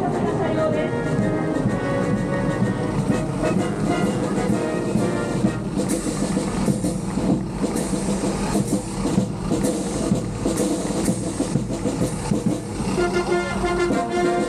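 A military band's brass playing, mixed with the engines of military vehicles driving past in a parade.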